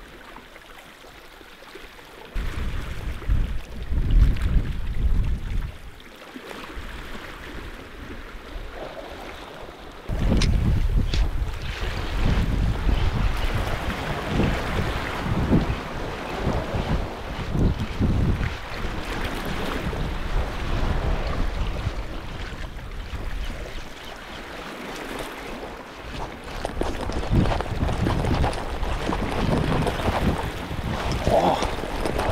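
Wind buffeting the microphone in gusts over the sea washing against the shore rocks. The wind noise jumps louder about ten seconds in and keeps gusting from then on.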